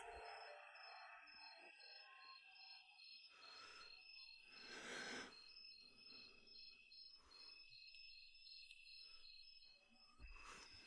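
Near silence: faint room tone with a few soft, breathy puffs, the loudest about five seconds in.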